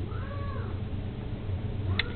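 A cat meowing faintly: one short meow that rises and falls in pitch, with a fainter second one starting near the end, over a steady low hum.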